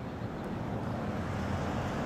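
Outdoor background noise: a steady low rumble of distant road traffic, slowly growing a little louder.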